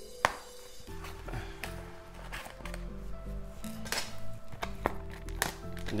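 Background music with held low notes, with a few short, light clicks scattered through it.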